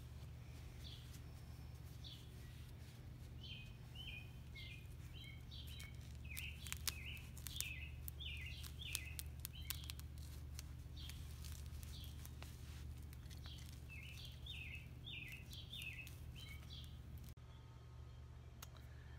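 Birds chirping in short, repeated calls over a steady low hum, with a few light clicks around the middle.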